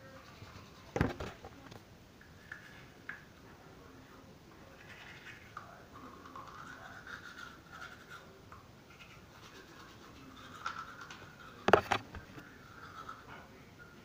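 A manual toothbrush scrubbing teeth, a faint scratching. Two sharp knocks stand out, one about a second in and a louder one near the end.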